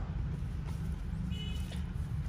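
Low, steady background rumble, with a brief faint high-pitched tone about one and a half seconds in.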